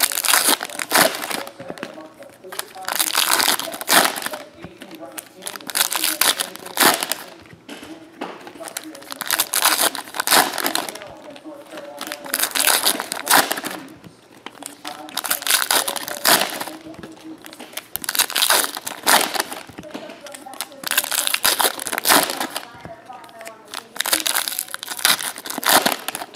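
Foil trading-card packs being torn open and crinkled by hand, one after another, in loud rustling bursts every two to three seconds.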